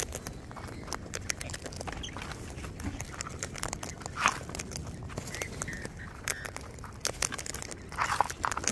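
Sulphur-crested cockatoos cracking seeds with their beaks as they feed from a tub of seed mix: a steady run of small sharp cracks and clicks, with one louder short sound about four seconds in.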